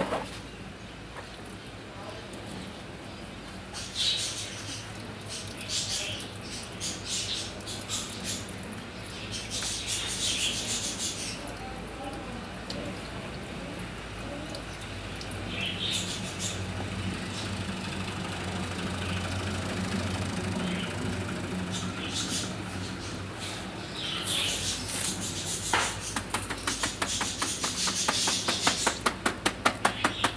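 Wet bird seed and water poured from a plastic tub through a wooden-framed mesh sieve, splashing and draining, to rinse the dirt out of the seed. Near the end the sieve is shaken and knocked against the tub in a fast run of sharp taps.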